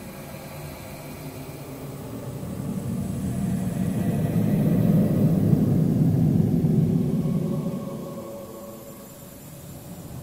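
A low rumble that builds up over a few seconds, is loudest in the middle, and fades away again near the end.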